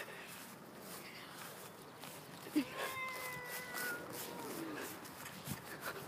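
Quiet open-air background with a faint, drawn-out held vocal note from one of the onlookers about halfway through, lasting a second or two before fading.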